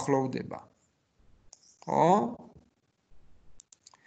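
A man's voice trails off, speaks one short phrase, and shortly before the end there are three quick, sharp clicks at the computer.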